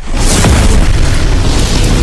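A loud explosion sound effect that starts suddenly and stays loud, a deep rumble under a hiss, with music beneath it.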